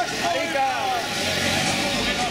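Engine of a motor trike running at low speed as it rolls slowly past, under the voices of people talking on a busy street.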